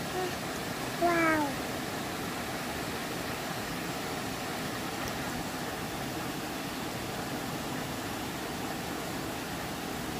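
Shallow stream water running steadily over stones, with a small waterfall. About a second in, a toddler gives one short wordless cry that falls in pitch, with a fainter one just before it.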